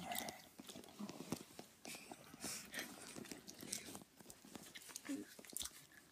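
Faint, irregular wet clicking and smacking of someone chewing a mouthful of bubble gum close to the microphone.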